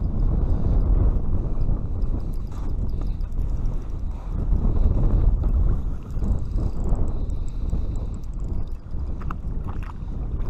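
Strong wind buffeting a GoPro microphone, a heavy rumble that swells and dips, with a few faint clicks near the end.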